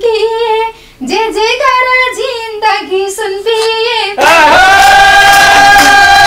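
A woman sings a Nepali dohori folk line alone and unaccompanied, her pitch bending through each phrase. About four seconds in, a harmonium holding a steady chord and a madal hand drum come in loudly with handclaps.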